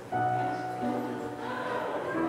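Solo piano playing slow, quiet prelude music: a new chord sounds just after the start and rings on, with further notes changing around the middle.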